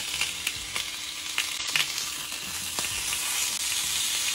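Salmon fillets sizzling on an oiled ridged grill plate, a steady hiss, with scattered light clicks and taps as the pieces are turned with a wooden spatula.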